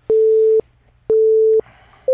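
Workout interval timer beeps: two identical steady electronic tones, each about half a second long and one second apart, counting in the next work interval.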